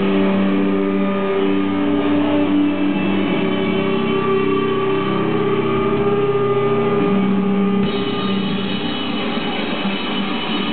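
Live rock band playing loud: electric guitar holding long sustained, ringing notes that shift pitch every couple of seconds, with only occasional drum hits.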